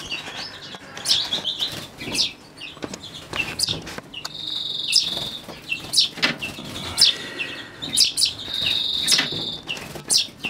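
Captive finches chirping and calling in a birdroom: many short, high chirps, with two longer, steady, high trills about four and eight seconds in.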